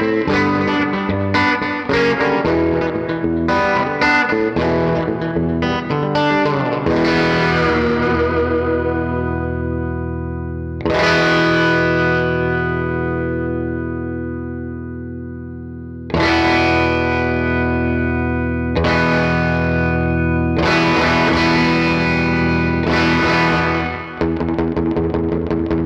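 Electric guitar played through a Fender Mustang GTX100 modeling combo amp with its Mono Tape Delay effect in the chain. It plays a run of quick picked notes, then a series of chords struck and left to ring out and fade, a new chord every two to five seconds.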